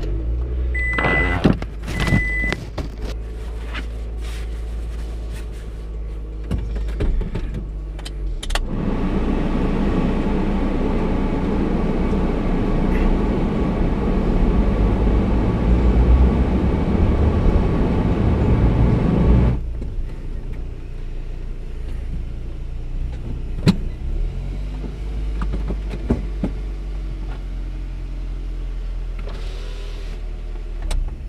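Vehicle engine running, heard from inside the cabin while driving, with two short electronic beeps about a second in. Engine and road noise swell louder for about ten seconds in the middle, then settle back to a quieter steady run.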